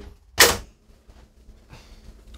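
A single sharp, short impact sound about half a second in, fading quickly, then quiet room tone.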